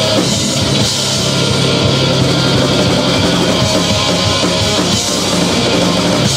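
Live heavy rock band playing loud and steady: distorted electric guitars, bass and a drum kit, with no vocals in this passage.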